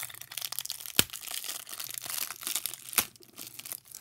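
Clear plastic wrapping crinkling and crackling as it is handled and pulled open, with two sharp snaps, one about a second in and one about three seconds in.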